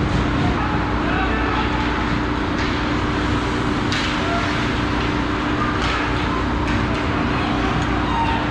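Ice hockey play close to the goal: skates and sticks on the ice over a steady rink hum, with sharp knocks of stick or puck about four, six and seven seconds in and faint shouting voices.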